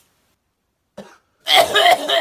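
After about a second of dead silence, a person coughs loudly, starting about one and a half seconds in, just after lighting and drawing on a cigarette.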